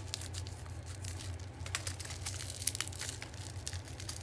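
Black plastic wrapping crinkling and tearing as it is cut with scissors and pulled off a small box, in irregular crackles.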